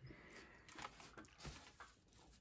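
Near silence with a few faint taps and rustles from hands handling fabric and a steam iron on an ironing board.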